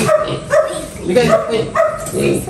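Young pigs in plastic crates making short, repeated calls, about one every half second.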